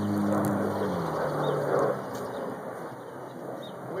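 A steady engine hum, like a passing vehicle, drops in pitch about a second in and fades away.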